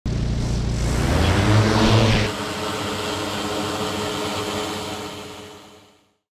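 Large enterprise quadcopter drone's rotors running, a steady multi-toned hum. It is loud for the first two seconds, rising in pitch, then drops suddenly to a quieter steady hum that fades out near the end.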